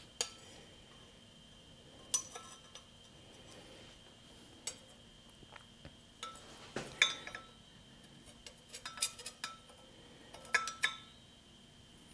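Scattered light metal clinks and taps, some briefly ringing, as a steel straightedge and metal engine parts are handled against the pulleys and alternator bracket while pulley alignment is being checked. A cluster of clinks comes about two thirds of the way through.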